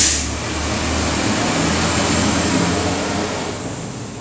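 Passing traffic on a highway: a loud, steady rushing noise that starts with a sudden jolt and eases off toward the end.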